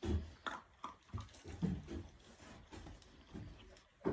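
Two puppies eating dry kibble from a metal bowl: irregular chewing and crunching with scattered clicks, strongest in the first two seconds.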